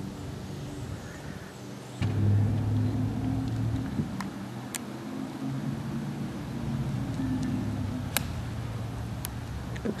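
A steady low engine hum starts suddenly about two seconds in and runs on. Near the end comes a sharp click: a golf ball struck off the tee with an iron.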